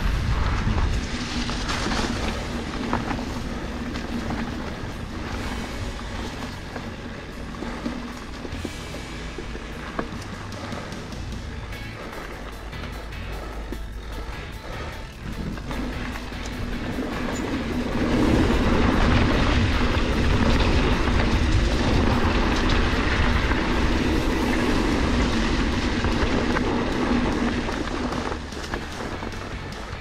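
Background music over the ride noise of a Norco Fluid FS A2 full-suspension mountain bike on a dirt forest trail: tyres rolling and the bike rattling over bumps. The sound gets louder about eighteen seconds in.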